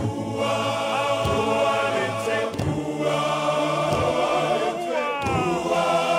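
A large men's choir singing in harmony, holding long notes, with a falling slide about five seconds in.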